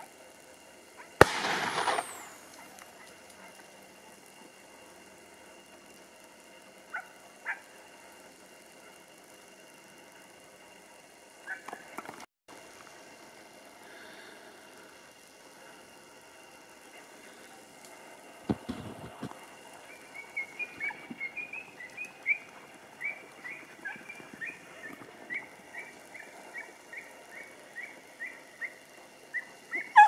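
Hunting hounds (podencos) giving tongue in the tamarisk thicket: from about two-thirds of the way through, a run of short, high yelps, roughly two a second. Before that comes a single sharp, loud bang about a second in.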